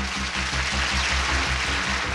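Game-show opening theme music with a fast, pulsing bass line, under a dense noisy wash across the higher range.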